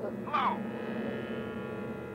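A steady, buzzy synthesizer drone from the film score, rich in overtones, after a short rising-and-falling vocal sound just before half a second in.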